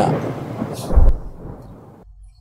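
Thunderstorm sound effect: a rushing storm rumble with one deep thunder boom about a second in, then fading away.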